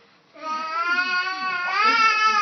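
Puppy howling: after a brief quiet, one long drawn-out howl that rises in pitch near the end.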